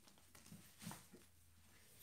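Near silence, with a few faint, short rustles of two grapplers shifting their bodies on a foam mat, about half a second and a second in.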